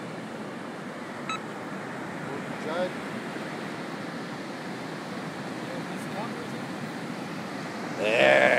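Steady outdoor beach noise from wind and surf, with a brief high blip about a second in and a faint voice near three seconds.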